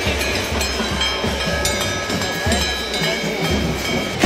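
Festival crowd din mixed with music, with thin steady ringing tones over a low irregular rumble.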